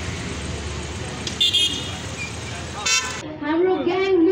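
Two short horn toots over steady engine and outdoor noise from a row of scooters and motorbikes, then a man's voice over a crowd near the end.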